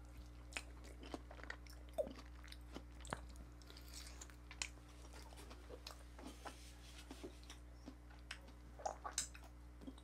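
A person biting into and chewing soft durian flesh: faint, irregular wet mouth clicks and smacks over a low steady hum.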